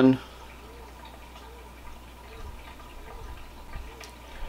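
Faint water trickling and dripping in a saltwater reef aquarium, over a steady low hum.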